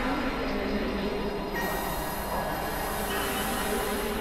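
Experimental electronic noise music: a dense, steady drone texture with tones gliding up and down beneath it. About a second and a half in, a bright hiss opens up in the high end.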